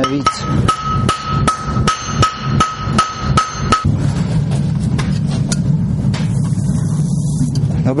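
A farrier's hammer strikes a red-hot horseshoe on a steel anvil, hot-shaping the shoe. There are about ten blows, roughly two and a half a second, each with a bright metallic ring. The blows stop about four seconds in, leaving a steady low hum.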